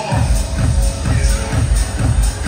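Electronic dance music played loud over a nightclub sound system. A four-on-the-floor kick drum comes back in right at the start and carries on at about two beats a second.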